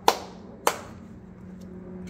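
Two sharp hand claps by one person, about half a second apart.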